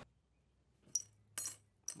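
Small metal hard-drive platter clamp ring set down into a steel parts bowl full of screws: three short, bright metallic clinks, about a second in, at a second and a half, and just before the end.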